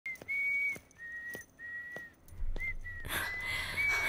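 A tune whistled in clean, held notes of about half a second each, with slight changes of pitch between them. A little past two seconds in, a low steady hum and a soft wash of sound come in underneath.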